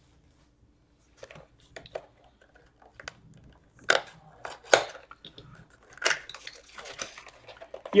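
Trading card pack wrapper crinkling and cards being handled, with scattered small crackles and three sharper crackles about four, five and six seconds in.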